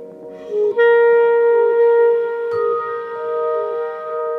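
Clarinet entering with a breathy attack just under a second in, then holding one long, steady note over quieter sustained ringing tones, with a single soft percussive knock about halfway through.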